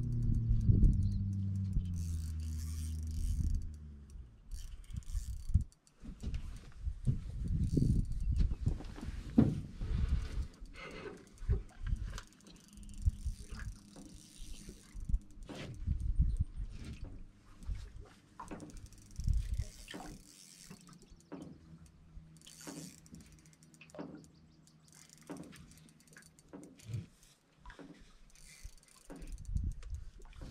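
Fishing reel being cranked in and clicking while a hooked fish is played, with scattered knocks and clatter of gear handled in an aluminium boat. In the first few seconds a low hum falls in pitch and fades.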